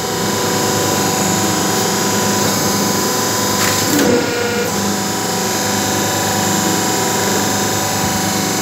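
Hydraulic power unit (electric motor and pump) of a semi-automatic hydraulic paper plate making machine running steadily with a hum. About four seconds in, the sound briefly changes with a short click as the hand lever of the hydraulic control valve is pulled.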